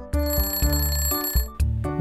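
An alarm-clock-style ringing sound effect marks the countdown timer running out. It rings for about a second and a half over cheerful background music.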